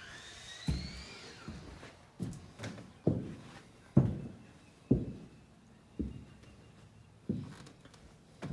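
Footsteps on the bare plywood subfloor of a framed, unfinished house, about one step a second. A brief high squeak rises and falls in the first second or so.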